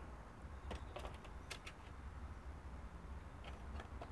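Faint, scattered light clicks of fingers handling wires and a small plug-in stepper driver module on a 3D printer's control board.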